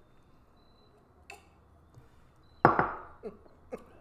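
A glass set down on a table with one sharp clink about two and a half seconds in, followed by a few small clicks.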